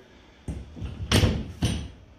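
A sliding barn door rolling open along its overhead steel track with a rumble, ending in a thud about a second and a half in.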